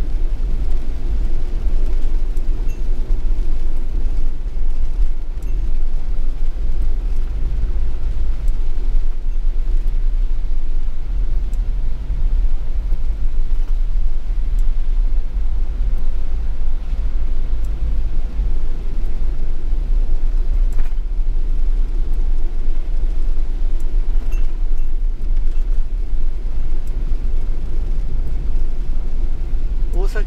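Steady low rumble of a camper van's engine and tyres on a wet road, heard from inside the cabin while driving along.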